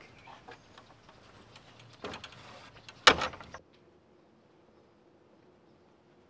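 A wooden gate with a metal latch being pushed open about two seconds in, then banging shut with a loud clack about a second later. The sound then cuts to a faint steady hum.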